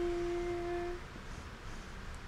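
A child humming one steady note for about a second.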